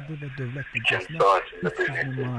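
A man speaking continuously; only speech is heard.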